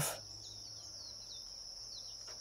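A steady high-pitched insect drone with a quick run of short, falling bird chirps over faint background noise.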